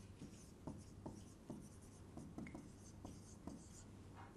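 Dry-erase marker writing on a whiteboard: a faint run of short strokes as a word is written.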